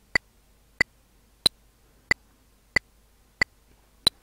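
Audacity's generated click track with its "tick" sound, previewing at 92 beats per minute in four-four time: six short, sharp ticks evenly spaced about two-thirds of a second apart. The tick about a second and a half in, the first beat of the bar, is slightly brighter than the others.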